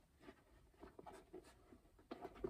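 Very faint rustling and scattered soft scratchy ticks of a stiff Portland Leather Mini Crossbody bag being handled as it is worked inside out.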